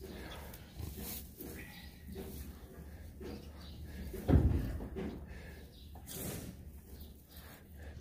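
Faint rustling of straw bedding and handling noise as a newborn calf is handled, over a low steady hum. A short, louder low thud or grunt comes about four seconds in.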